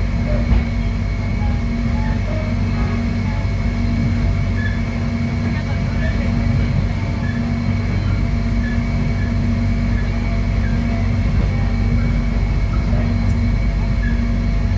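Cabin sound of an electric airport rail link train running along the line: a steady low rumble with a constant hum from the running gear and traction equipment, and one brief knock about half a second in.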